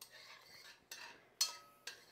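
Metal spoon stirring melting butter and minced garlic in an enamelled Dutch oven, scraping softly against the pot. About one and a half seconds in, one sharp clink of spoon on pot rings briefly.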